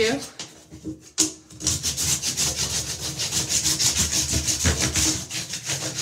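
A small plastic clothes hanger, used as a scraper, rubbed in quick back-and-forth strokes against a bathtub's surface to scrape off hard water deposits and soap scum. The scraping starts about a second and a half in, just after a single sharp tap, and keeps up a fast, even rhythm.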